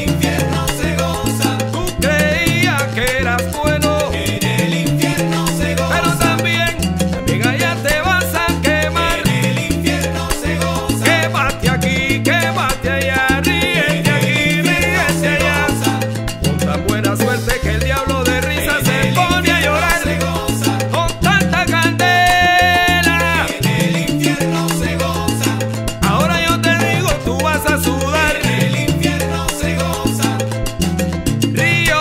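Salsa music in an instrumental stretch with no singing, carried by a repeating bass line under busy melodic lines.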